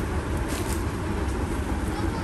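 Steady background noise of a crowded market stall, an even hiss with a low rumble and no distinct events.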